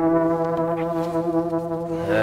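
A vehicle horn held down in one long, steady blast at a single pitch.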